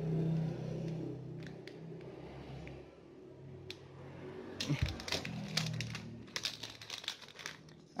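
Small scissors snipping open a thin plastic parts bag, with the plastic crinkling as it is handled. There are a few faint clicks at first, then a busier run of crinkling from about four and a half to seven seconds in.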